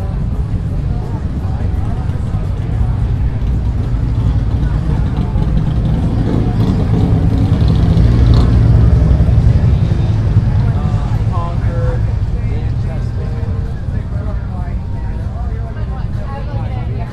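Motorcycle engines running on the street in a steady low rumble that swells to its loudest about halfway through, with crowd voices and chatter over it.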